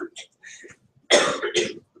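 A man coughing, two short coughs about a second in.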